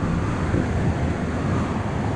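Steady, low rushing of water flowing down the start of a tube water slide.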